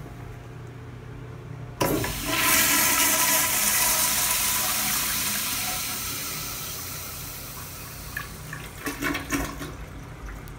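American Standard toilet flushing: a loud rush of water starts suddenly about two seconds in and slowly fades as the bowl drains, followed by a few short knocks near the end.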